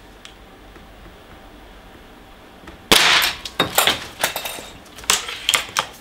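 A Gamo Bone Collector IGT gas-piston break-barrel air rifle with a shrouded barrel fires once, a sudden sharp shot about three seconds in. Several quicker clicks and knocks follow over the next few seconds, as the barrel is broken open to cock it again.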